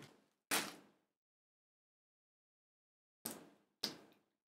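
A few short mouth sounds of someone biting into and eating a sauced chicken wing. There is one clearer sound about half a second in and two faint ones near the end, with silence between.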